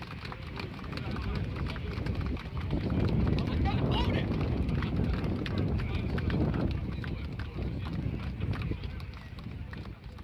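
Indistinct chatter of many men's voices with scattered hand claps and slaps as rugby players shake hands down the line, swelling a couple of seconds in and fading near the end.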